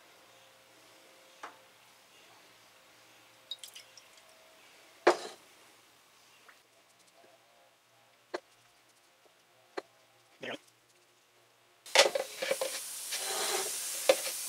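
Scattered light clicks and knocks of a plastic bottle and fuel line being handled while Seafoam cleaner is poured into the line. Near the end a steady hiss starts: compressed air from a shop air line, put at about 5 psi to push the fluid through a fuel injector.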